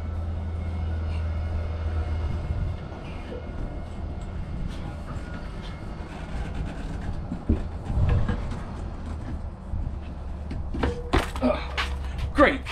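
A man climbing down a motorhome's metal rear ladder: scattered faint knocks from his shoes and hands on the rungs over a steady low rumble.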